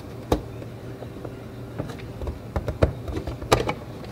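Hard plastic clicks and knocks from hands handling the LAB-BOX film developing tank and lifting off its lid: one sharp click about a third of a second in, then several more spread through the second half.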